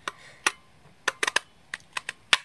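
Sharp plastic clicks and taps from a large craft paper punch being handled: one about half a second in, then a quick run of about four a little past the middle, and one more near the end.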